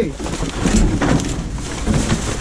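Paper, binders and cardboard rustling and scraping as gloved hands dig through a pile of trash.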